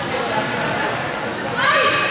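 Overlapping voices of a group of students chattering in a large, echoing sports hall, with a louder voice near the end and a few light ball bounces on the floor.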